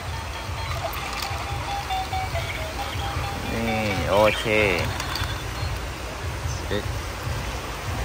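Battery-powered walking toy crab playing a simple electronic tune, single beeping notes stepping downward, which stops about halfway through. A steady low rumble runs underneath.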